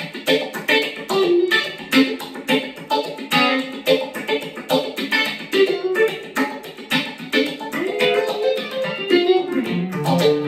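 Electric guitar played through the BigNoise Phase Four analog phaser pedal: a funk rhythm of quick, short, choppy strums, several a second, with a subtle phase sweep.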